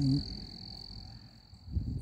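A woman's short hummed "mm-hmm" at the start, then quiet outdoor background with a steady high-pitched whine.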